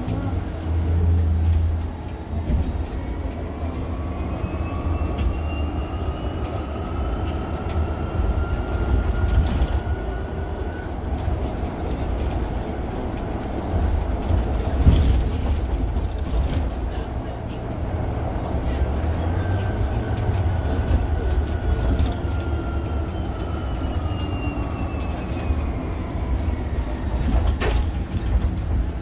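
Cabin sound of a Mercedes-Benz eCitaro G articulated electric bus driving: the electric drive's whine climbs in pitch as the bus pulls away and speeds up, then fades out under the low rumble of tyres and body. In the second half a falling whine follows as the bus slows down, with a few knocks and rattles from the interior.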